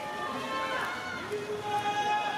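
Several people talking and calling out over one another outdoors, with some long drawn-out calls; only voices.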